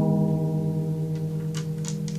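A strummed chord on a nylon-string classical guitar ringing out and slowly dying away, with a couple of faint clicks near the end.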